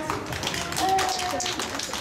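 Audience applause: a crowd clapping in a dense patter, with a faint voice partway through.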